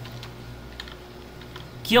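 Computer keyboard keystrokes: a scattering of light, faint key clicks.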